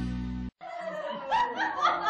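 A held music chord that cuts off abruptly about half a second in, followed by laughter and chuckling.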